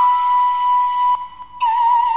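Intro music: a flute-like melody holding one long note, breaking off briefly a little after a second in, then a slightly lower note with vibrato.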